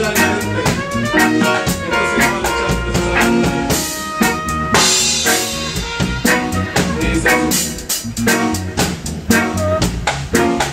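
Reggae band playing: a drum kit keeps a regular beat with rimshots, under bass and sustained melodic lines.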